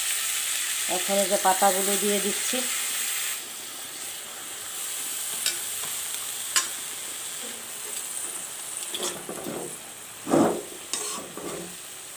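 Chopped bottle gourd leaves and spiced dried fish sizzling in a metal wok while a steel spatula stirs and scrapes through them. The sizzle drops a few seconds in, leaving a few sharp clinks and a louder scrape near the end.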